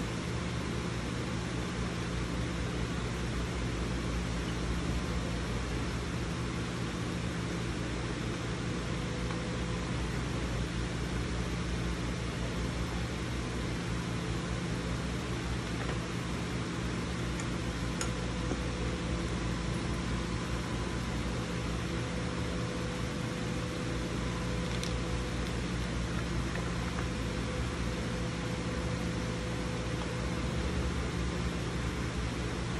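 Steady low hum and hiss of a running fan or similar small motor, with two faint clicks, one a little past the middle and one later.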